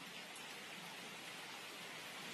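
Faint, steady hiss of even noise with no pitch or rhythm.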